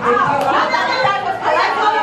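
Several women talking over one another, loud, overlapping chatter with no one voice standing out.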